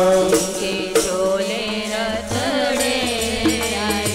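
Sikh kirtan: voices singing a devotional hymn over a harmonium's held reed notes, with a hand-played dholak drum striking now and then.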